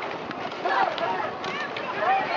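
Voices calling out from the riverbank during a rowing race, words unclear, in two short bursts over a steady outdoor hiss.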